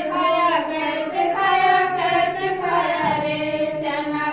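A group of women singing a Hindi children's action song about sowing gram (chana) together, in unison.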